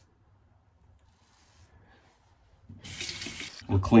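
A water tap runs briefly for about a second near the end, rinsing the safety razor's blade under the stream; before that there is only faint sound.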